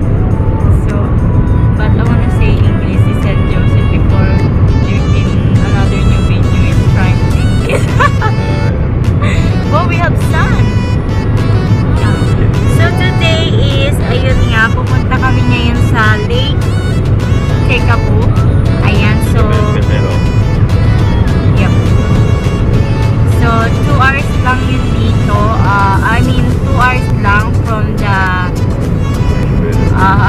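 A woman singing along to music inside a moving car, over the car's steady low road and engine rumble.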